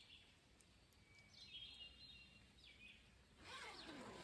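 Near silence with a few faint bird chirps in the middle, then a rustle near the end as the fabric of a camouflage pop-up ground blind is handled.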